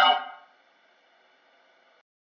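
The last word of a man's deep, theatrical spoken line fades out in a reverberant tail within about half a second, followed by near silence.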